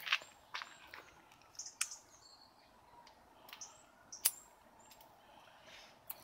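Quiet outdoor ambience with a few faint bird chirps and scattered short, sharp clicks.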